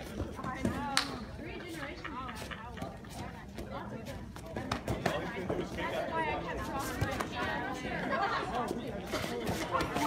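Background chatter of many voices in a large hall, with scattered sharp slaps and clicks, the sharpest about a second in.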